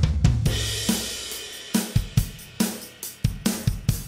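Logic Pro Drummer-track acoustic drum kit (SoCal Kit) playing a steady beat of kick, snare and hi-hat, with a cymbal crash at the start that washes out over about two seconds. It is heard through heavily compressed 3:1 parallel compression, with the Compressor's Mix knob being moved between the compressed and uncompressed signal.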